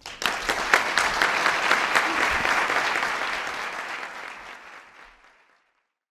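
Audience applauding after a speech, fading out over the last few seconds and gone shortly before the end.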